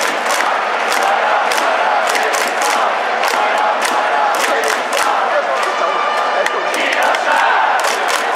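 Baseball stadium crowd chanting in unison with rhythmic clapping, about two to three claps a second, like an organised cheering section.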